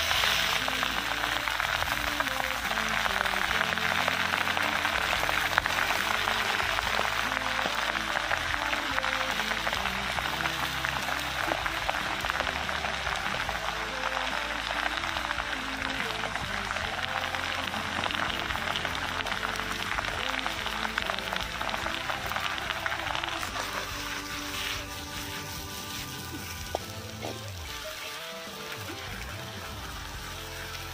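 Chopped napa cabbage sizzling in a hot wok over a wood fire, the sizzle loudest at first and fading gradually as the cabbage wilts, with background music throughout.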